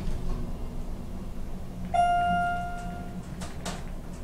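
Elevator chime: a single bell-like tone about two seconds in, fading over about a second, over the steady low hum of the moving elevator car. Two brief knocks follow near the end.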